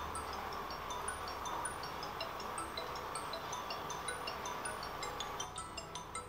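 Soft background music of sparse, high, tinkling chime-like notes. Near the end it grows busier as lower notes join in.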